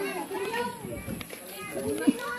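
Several indistinct voices talking, some of them high-pitched like children's.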